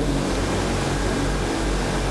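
Steady background noise: an even hiss with a low, constant electrical hum underneath, running unchanged while no one speaks.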